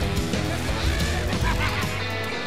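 Animated-film soundtrack of a dirt-track car race: dense music with short, bending high-pitched tones about a second in and again near the end.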